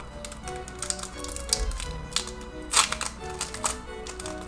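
Foil booster-pack wrapper being torn open and crumpled by hand: a run of short, sharp crackles, loudest a little before three seconds in. Quiet background music with held notes plays underneath.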